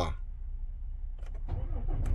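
Truck diesel engine idling, a steady low rumble heard inside the cab, with a few faint clicks a little over a second in.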